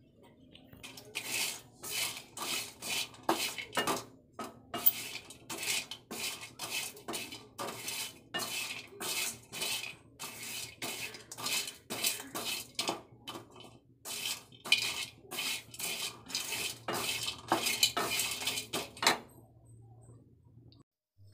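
Wooden spatula stirring dry whole spices (cinnamon bark, cardamom pods and cloves) in a hot steel kadai to dry-roast them: a quick, even run of rattling scrapes, about two a second. It starts about a second in and stops about a second before the end.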